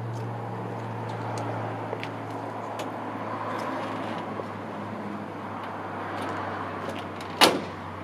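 The side panel of a 1938 Buick's hood being closed, with one sharp metal clunk about seven seconds in as it shuts.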